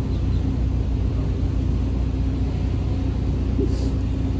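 Steady low rumble of outdoor background noise with a faint steady hum, and a brief hiss near the end.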